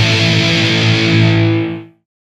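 Hardcore punk music: a distorted electric guitar rings out on a held chord. Near the end it fades quickly to silence as the song ends.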